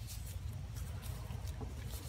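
Faint rubbing and rustling of nitrile-gloved hands twisting a rubber air-oil separator hose on its fitting, with a few light ticks over a low rumble.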